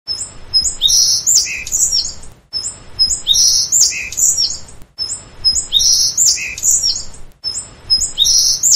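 Bird chirps and whistles played as a short loop: the same phrase of high calls repeats about every two and a half seconds, with a brief silent gap between repeats.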